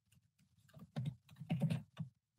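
Runs of soft, quick clicks and taps, one cluster about a second in and another near the end.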